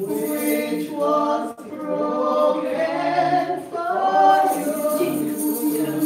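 Women singing a gospel communion hymn into microphones, in long held notes that rise and fall, with a short break about one and a half seconds in.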